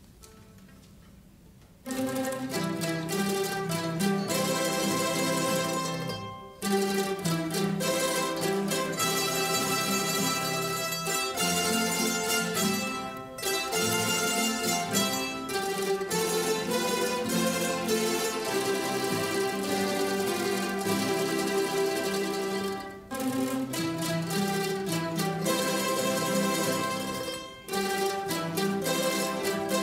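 Mandolin orchestra of mandolins and guitars playing a song together. It comes in about two seconds in and stops briefly between phrases, three or four times.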